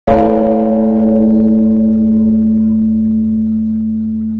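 A single stroke on a gong-like metal percussion instrument: a sudden strike, then one long ringing tone with several overtones above it, fading slowly.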